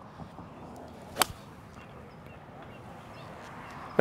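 A golf iron strikes the ball once: a single sharp crack about a second in, over faint outdoor background.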